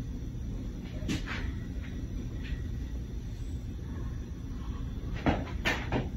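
Gym locker room noise: a low steady hum with a few sharp knocks, one about a second in and two close together near the end.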